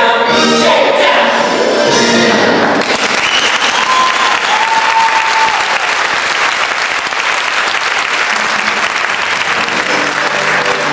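A show choir holds the final chord of a song, which cuts off about three seconds in, and an audience breaks into applause. A couple of short whistles sound over the clapping.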